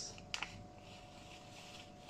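Milo chocolate malt powder sliding out of a plastic sachet into a glass tumbler: a faint soft hiss, with one light click about a third of a second in. A faint steady hum sits underneath.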